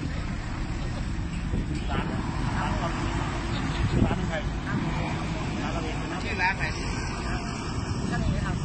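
Road traffic passing close by: a steady low rumble of vehicles, with a container truck going past about halfway through.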